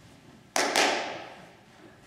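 A single sudden, loud crash, struck in two quick onsets, that rings away over about a second, a stage sound cue during a play.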